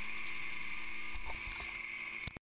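Gyrobee gyroplane's Rotax engine running steadily at a quiet level, with a few faint knocks in the second half.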